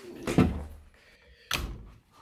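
Two dull thuds about a second apart, from a door being handled and shut.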